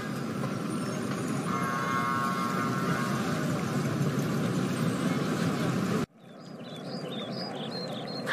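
Steady street ambience, a wash of distant traffic noise with a faint held tone near the middle. About six seconds in it cuts off suddenly to quieter park ambience with birds chirping.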